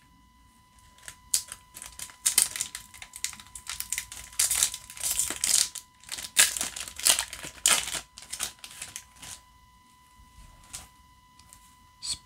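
Foil trading-card booster pack wrapper being torn open and crinkled: a quick run of crinkling and tearing bursts over about eight seconds, busiest in the middle.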